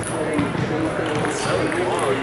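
Voices talking in a large gym hall, with a few short, sharp taps of table tennis balls.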